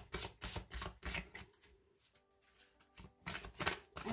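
A tarot deck being shuffled by hand: quick card slaps about four a second, which pause for about two seconds in the middle and then start again briefly.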